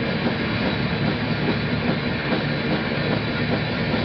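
Thrash metal band playing live: distorted electric guitars, bass guitar and drum kit in a dense, steady wall of sound, with rapid drum strokes running underneath.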